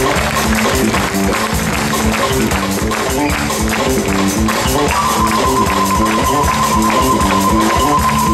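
Live West African band of balafon, drum kit, electric bass and saxophone playing a quick repeating riff. About halfway through, the saxophone comes in holding one long high note over it.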